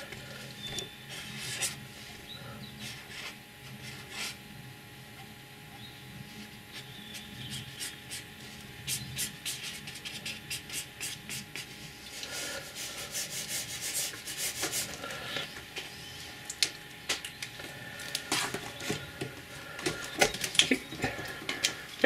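Ink pen scratching and rubbing across wet paper in quick sketching strokes. The strokes are sparse at first and come thick and fast in the second half.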